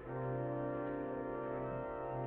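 Organ playing the postlude: slow, sustained chords that hold without fading, moving to a new chord near the end.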